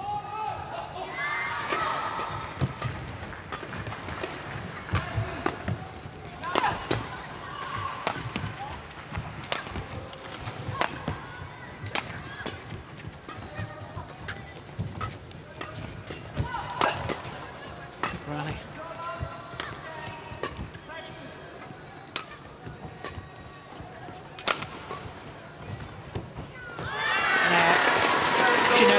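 Badminton rally in women's doubles: sharp cracks of rackets striking a shuttlecock at uneven intervals, with arena crowd voices shouting during the rally. Near the end, a loud burst of crowd cheering as the point is won.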